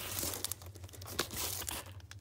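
Plastic comic book bags crinkling and rustling as bagged-and-boarded comics are flipped through and pulled out of a cardboard short box, with a scatter of short sharp ticks.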